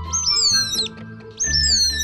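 A cartoon bird singing: two short, high whistling chirp phrases, each sweeping up sharply and then gliding down, over soft background music.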